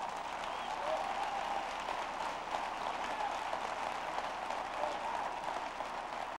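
Audience applauding steadily, with a few voices calling out among the clapping.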